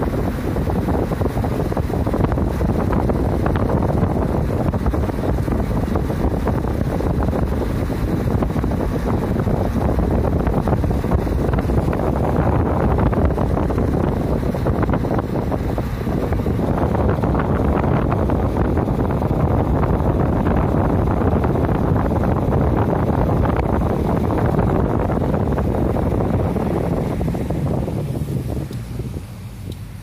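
A car driving along a road makes a steady low rumble of road and wind noise, with wind buffeting the microphone. It grows quieter near the end.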